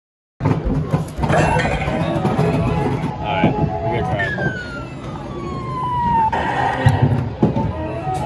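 Busy arcade noise: music and people's voices mixed with electronic game sounds, starting after a brief dropout at a cut. Near the middle, one electronic tone slides steadily down in pitch for about two seconds.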